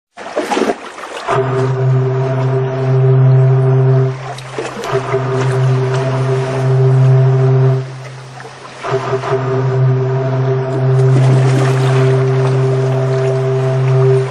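A ship's deep horn sounding three long blasts of a few seconds each at one steady low pitch, with a rushing hiss underneath.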